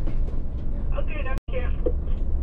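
Cab interior of a VDL city bus on the move: a steady low rumble from the drivetrain and road, with a voice heard a little after one second in. The sound drops out completely for a split second in the middle.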